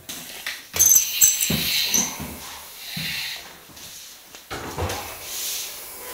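Squeaks and rubbing from a long pack of plastic-wrapped coving lengths being lifted and manoeuvred, with the sharpest, highest squeaks coming in a cluster from about a second in.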